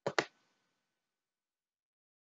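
Two quick computer mouse clicks in a row, a fraction of a second apart.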